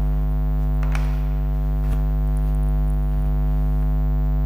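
Loud, steady electrical mains hum with a stack of buzzing overtones, with two faint knocks about one and two seconds in.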